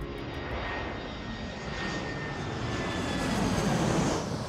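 Airplane fly-by sound effect: a rushing engine noise with a faint steady whine, growing louder toward the end.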